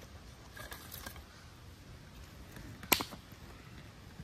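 Quiet handling noises: a few faint clicks in the first second and one sharp click about three seconds in, as sticks and food items are moved about by hand.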